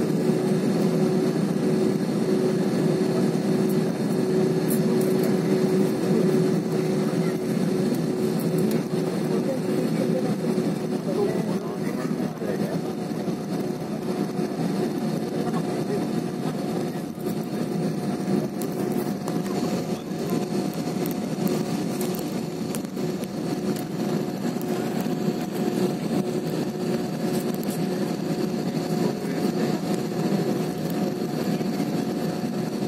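Steady cabin noise of an IndiGo Airbus A320-family airliner moving on the ground with its jet engines at low power: an even hum with a steady engine tone and a faint high whine. A second, higher engine tone comes in about two-thirds of the way through.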